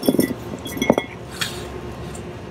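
Steel brake caliper bracket and slide pin clinking together as they are handled: a few light knocks and a short metallic ring about a second in.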